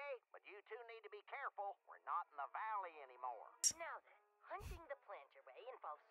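Quiet dialogue between animated cartoon characters, with background music under it. A short sharp click comes about three and a half seconds in, and a brief thump about a second later.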